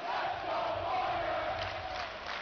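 Large crowd yelling and cheering together in one sustained shout.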